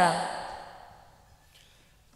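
The end of a man's amplified voice sliding down in pitch, its hall echo dying away over about a second and a half into near silence.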